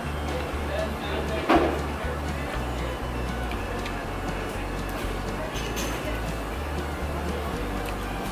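Background music with a steady, repeating bass line, and a brief sharp sound about one and a half seconds in.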